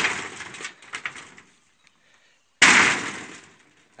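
Two stones set down one after the other on a corrugated iron roofing sheet: each a sudden metallic clatter whose rattle fades over a second or so. The first comes right at the start, the second about two and a half seconds in.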